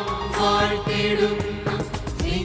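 Mixed choir of men and women singing a Christian devotional song in unison over instrumental accompaniment, with a few percussion hits.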